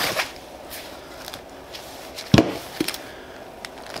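A metal ticket-book holder being handled out of a nylon duty-bag pouch. It makes soft rustling, one sharp knock a little past halfway and a lighter knock just after.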